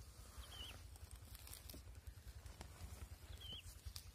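Near silence: faint outdoor background with a low rumble, a few small clicks, and two brief high chirps, one about half a second in and one near the end.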